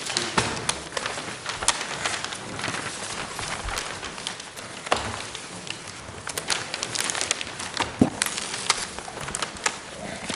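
Sheets of paper being shuffled and rustled close to a desk microphone, with frequent irregular crackles and small taps against the desk.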